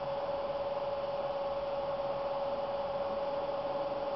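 A steady hum at one unchanging pitch over faint hiss.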